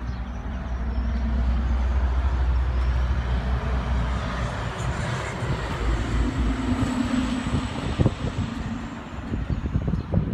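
A motor vehicle passing on the street: a low engine and road rumble that builds over the first couple of seconds, holds, then fades toward the end.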